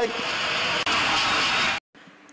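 Stadium crowd noise from a TV football broadcast, a steady roar of many voices after a goal. It cuts off abruptly near the end.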